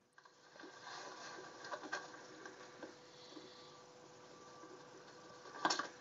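Faint outdoor background noise with a steady low hum and scattered small ticks, then near the end a short, sudden thump as the football is kicked.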